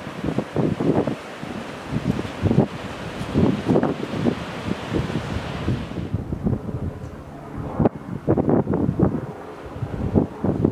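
Strong wind buffeting the camera microphone in irregular gusts, with a rushing hiss that drops away about six seconds in.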